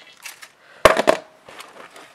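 Handling noise from a plastic light-up sign being picked up and moved: one sharp knock about a second in, then a short rattle and a few faint clicks.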